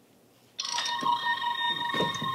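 Toy Star Trek tricorder sounding a steady electronic tone that switches on about half a second in and holds.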